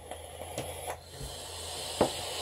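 A person vaping, drawing on an e-cigarette with a couple of faint clicks, then a soft breathy hiss of exhaled vapour that builds over the second half.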